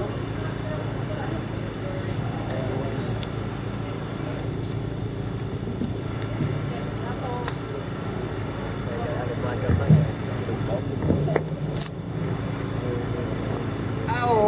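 City street ambience: a steady low hum of road traffic under quiet murmuring voices from a seated crowd, with a few sharp knocks between about ten and twelve seconds in.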